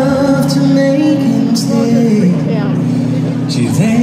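An a cappella vocal group singing a slow ballad live through an arena sound system: sustained sung harmonies over a low held bass voice, with gliding upper voices and a few short hissing hits.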